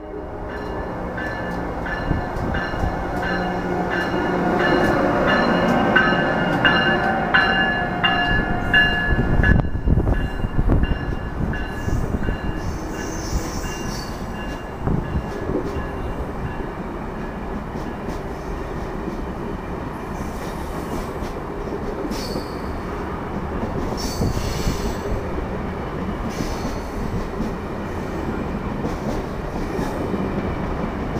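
Amtrak AEM-7 electric locomotive and its passenger coaches rolling past along the station track. For about the first ten seconds a steady high whine rides over the rumble; after that the coaches pass with a steady rumble and occasional wheel clicks.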